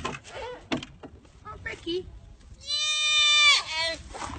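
A goat kid bleating: one long, high, steady call of about a second, about two and a half seconds in, breaking into a wavering quaver at its end. People's voices are heard before it.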